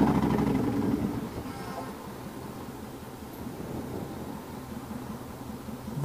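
Yamaha Raider's big V-twin running at low revs, dying down over the first second or so to a faint, steady idle as the bike comes to a stop in traffic.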